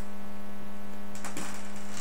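Steady electrical hum with a buzzy stack of overtones, picked up in the recording's audio chain.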